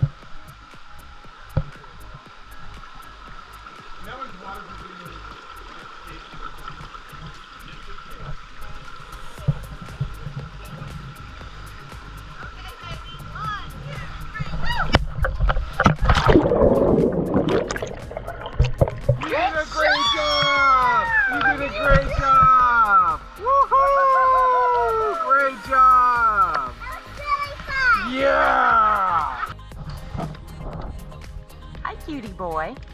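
Pool water splashing loudly as the camera goes into the water about halfway through, followed by background music with repeated falling sung notes.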